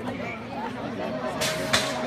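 Spectator chatter, then about one and a half seconds in a BMX start gate's final long electronic tone begins, with a sharp clatter from the gate dropping as the race starts.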